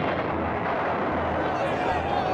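Steady, dense rumbling din from an old newsreel soundtrack of a rioting crowd, with no single event standing out.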